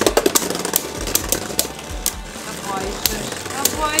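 Two Beyblade Burst tops, Dead Phoenix and Archer Hercules, spinning in a plastic stadium and clattering against each other and the stadium wall in rapid, irregular clicks.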